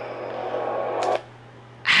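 Horror movie trailer soundtrack: a held, tense musical tone that grows louder, then cuts off suddenly about a second in as the trailer is paused. A man's voice begins right at the end.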